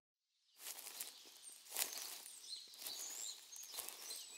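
Faint forest ambience starting about half a second in: small birds chirping over a soft hiss, with a few irregular crunches like footsteps on leaves.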